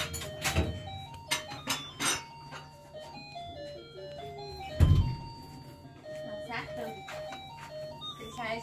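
A simple electronic jingle plays in single beeping notes, typical of a child's ride-on toy car, with several clicks early on and a loud thump about five seconds in.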